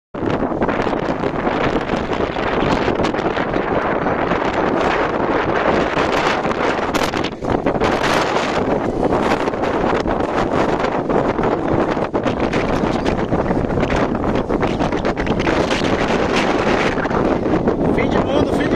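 Strong wind blowing against a phone microphone, loud and continuous, rising and falling in gusts.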